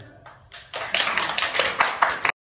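A small audience applauding, beginning lightly about a quarter second in and swelling to full clapping a little later.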